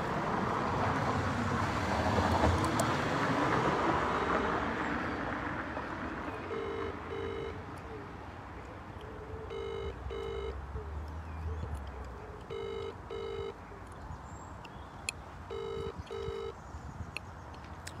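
Telephone ringback tone heard through a phone's speaker: four British-style double rings about three seconds apart, starting about six and a half seconds in, as the call goes unanswered. Before the rings, a rushing noise fades away.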